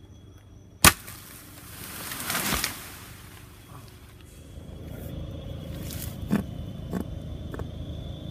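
A machete chops hard into wood about a second in, the loudest sound, followed by a swelling rustle of leaves lasting under a second. Three lighter chops come in the second half over a steady rustle of vegetation.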